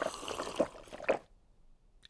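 Cartoon sound effect of a glass of water being drunk down in a few wet gulps, stopping just over a second in.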